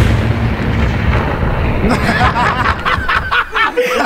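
Explosion sound effect, a dense noisy rumble for about the first two seconds, then excited voices over it.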